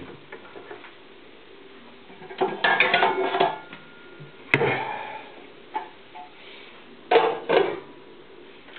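Cookware and utensils clattering in a small kitchen: a quick run of knocks and clinks, a single sharp clack about halfway through, and a couple more knocks near the end.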